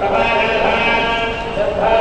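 A man chanting mantras in long held notes that step up and down in pitch, with a nasal, wavering tone.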